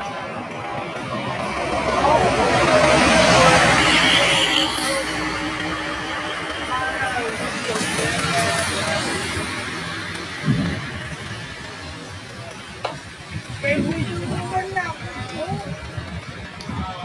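Large coach bus driving past close by, its engine and tyre noise swelling to a peak about three seconds in and then fading, followed by a smaller rise as a motorcycle passes about eight seconds in. Voices and music sound throughout.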